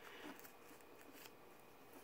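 Near silence: quiet room tone with a few faint small clicks.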